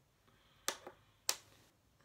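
Two sharp clicks about half a second apart, the first followed by a smaller click.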